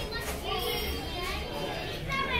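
Children's voices, talking and playing, among the indistinct chatter of diners in a restaurant dining room.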